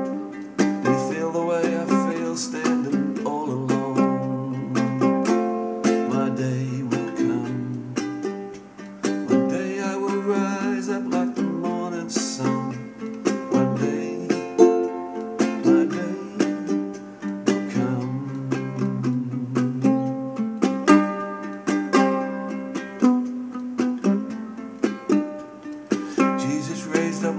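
Ukulele played solo in an instrumental passage: a continuous run of fingerpicked single notes and strummed chords.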